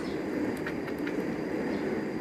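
Steady background noise with a few faint rustles of a plastic bag as flour is shaken out of it into a stainless steel bowl.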